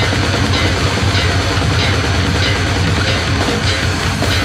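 Brutal death metal recording playing loud and without a break: heavy distorted guitars and drum kit, with a regular high accent about every two-thirds of a second.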